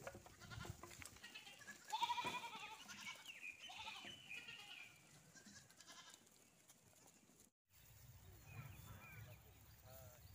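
Goats bleating: one loud, wavering bleat about two seconds in, followed by several higher, shorter bleats. The bleating dies down to a few faint calls after the middle.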